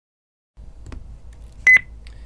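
A single short, high electronic beep near the end, after a faint click, over a low steady hum.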